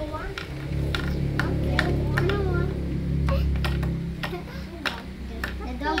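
Small plastic toy pieces clicking and clattering on a table among children's voices, with a low steady hum that starts about half a second in and fades after about four seconds.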